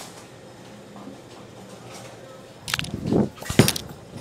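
Bowler's approach and release of a Roto Grip Exotic Gem bowling ball. A few sharp clicks come about two and a half seconds in, then a loud thud near the end as the ball lands on the lane, over the steady hum of the bowling alley.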